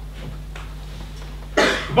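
A person coughing once, short and loud, about one and a half seconds in, over a low steady hum of room noise.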